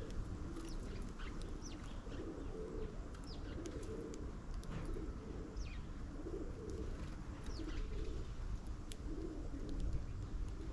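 Pigeons cooing over and over in low, soft notes, with short, high, falling chirps from small birds scattered over the top.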